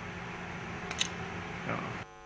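Rocket roll-control solenoid valve clicking once, about a second in, over a steady hiss that cuts off at the end. The click shows that the down solenoid does actuate on the ground test.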